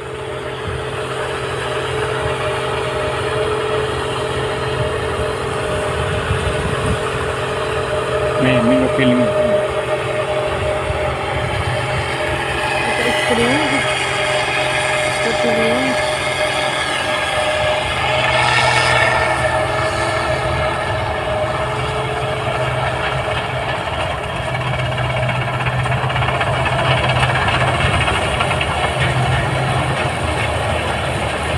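New Holland 8060 combine harvester running with a steady hum as it harvests rice, with a brief swell in the machinery noise about two-thirds of the way through.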